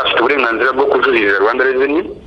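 A person speaking without pause.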